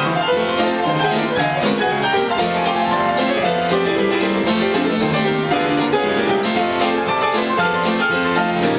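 Piano duet in a ragtime blues style: a busy, rhythmic stream of fast notes and chords, played without a break at a steady, strong level.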